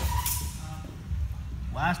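Two fencers moving and stepping on a wooden gym floor during a steel-sword sparring bout, heard as low thudding, with a brief thin ringing tone right at the start. A man's voice calls out near the end.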